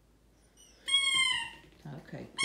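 A dog whining: one high, drawn-out whine about a second in that drops in pitch as it ends, in protest at being made to give up his toy.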